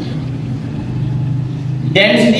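A steady low mechanical hum.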